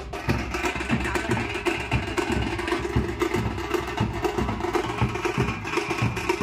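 Dhol-tasha drumming: several large barrel dhols beaten with sticks over a fast, continuous tasha rhythm. The strokes come many to the second with no break.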